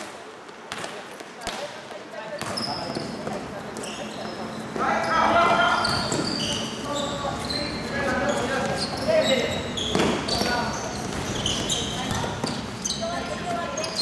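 Basketball dribbled on a wooden gym floor, with sharp bounces ringing in a large hall, sneakers squeaking on the court, and players' voices calling out from about five seconds in.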